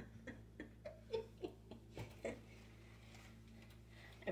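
Faint, scattered light clicks and taps in the first two seconds or so, from handling a carton of almond milk while trying to open its pull tab.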